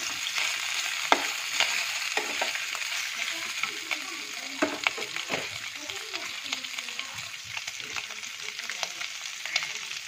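Pork pieces sizzling in oil in a metal pan, a steady hiss that eases slightly over time. In the first half, a metal spoon stirring the pork clacks and scrapes against the pan several times.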